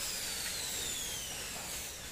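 Power drill running with a high whine that falls steadily in pitch over about two seconds, while joining the corners of a PVC cupboard frame.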